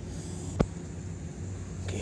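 A single sharp click about half a second in, over a steady low hum of background noise.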